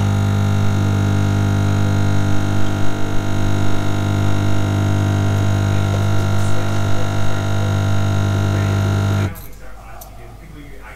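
Magimix Nespresso capsule coffee machine's pump buzzing steadily with a loud low hum as it brews coffee into a mug. The hum cuts off suddenly near the end as the machine finishes the cup.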